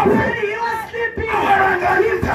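Loud voices calling out through handheld microphones over a PA system.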